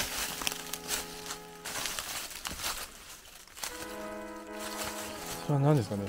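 Background music of sustained chords, broken off for a couple of seconds in the middle, over the crackle of dry leaves underfoot; a man starts speaking near the end.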